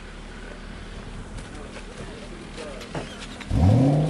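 A car engine comes in loudly near the end, its pitch rising and then easing slowly down as it revs. Before that there is only low background noise with faint voices.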